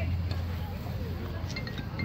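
Faint, distant voices of players and spectators over a steady low rumble.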